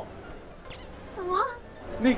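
A brief high hiss, then a short meow-like vocal call whose pitch swoops down and back up.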